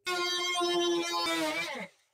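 Oscillating multi-tool running at a steady buzzing pitch for almost two seconds, then winding down in pitch as it is switched off.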